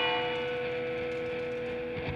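A bell ringing out and slowly fading over a sustained low note, in a quiet instrumental passage of a gothic folk song.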